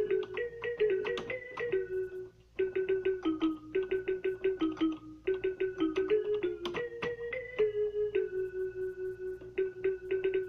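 Portable electronic keyboard playing a simple single-note melody, notes struck one after another at a steady pace, with a short pause a little over two seconds in.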